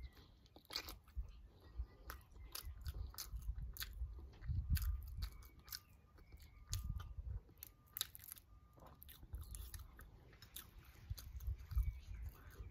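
Close-up chewing and biting of a boiled fertilized duck egg (balut), with many sharp clicks and crackles as eggshell is picked and peeled by hand.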